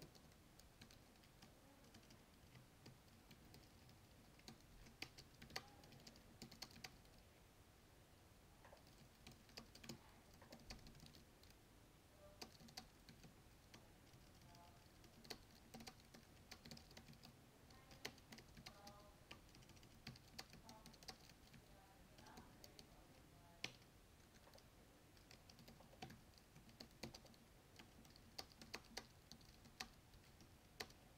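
Faint typing on a computer keyboard: irregular runs of quick key clicks.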